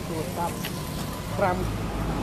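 Brief phrases of speech, in Khmer, spoken toward press microphones, over a steady low background rumble.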